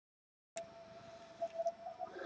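Dead silence, then about half a second in the microphone feed cuts in with a click: faint room tone with a thin, steady high whine and a couple of small soft knocks.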